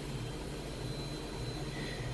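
A vacuum cleaner running steadily at a distance: a low, even hum with a faint thin high whine on top.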